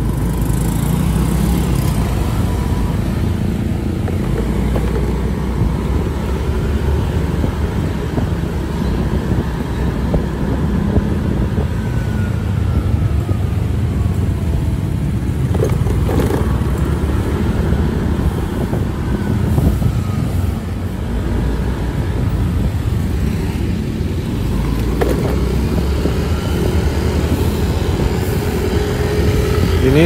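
Steady low rumble of a vehicle on the move through city traffic: engine, tyre and wind noise, with faint rising and falling engine notes from other traffic.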